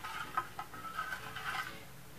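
A spoon stirring powdered dye into salt water in a large plastic bowl: faint swishing with a few light taps of the spoon.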